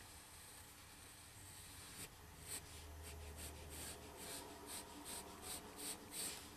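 Faint pencil scratching on paper: short, repeated sketching strokes that begin about two seconds in, going over a curled line to thicken it.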